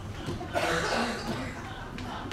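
A person coughing once, a short rough burst about half a second in, heard over faint distant stage dialogue.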